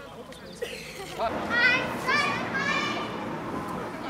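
High-pitched children's voices shouting and calling out over a background of crowd chatter, the shouts starting about a second in and loudest near the middle.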